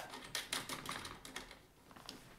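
Light clicks and taps of cable plugs being handled and pushed into a small mixer's sockets, several in the first second and a half, then fading out.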